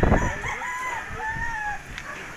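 A rooster crowing: one long drawn-out call lasting about a second and a half.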